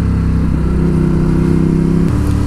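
Ducati Hypermotard 821's 821 cc Testastretta L-twin engine running at a nearly steady pace under way, its note holding even.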